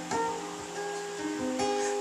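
Acoustic guitar strummed softly on its own, holding its chords.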